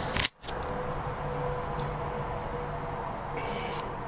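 Video camera starting a new recording: a short click with a moment's dropout just after the start, then steady low hiss of room tone with a faint hum and a brief rustle late on.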